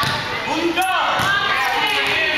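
Basketball bouncing on a hardwood gym floor as it is dribbled, with young children's voices chattering and calling out over it.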